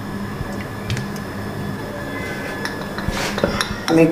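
A few light clinks and knocks of glass and metal kitchenware over a steady low hum, as cooking oil is poured from a glass bottle into an aluminium kadai.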